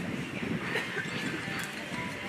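Microphone being handled and adjusted on its stand: irregular low knocks and rubbing carried through the PA, over faint room murmur.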